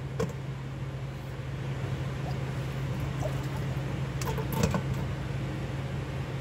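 Water boiling in the steel inner pot of an electric pressure cooker, a steady hiss over a low hum, with light knocks of glass jars being set into the pot just after the start and again as a short cluster about four and a half seconds in.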